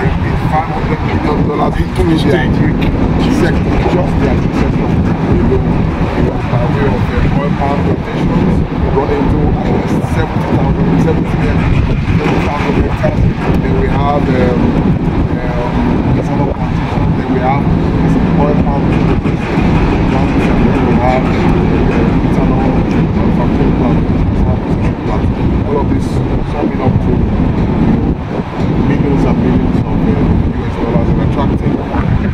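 A man talking over a loud, steady low rumble with a constant hum under it, unbroken throughout.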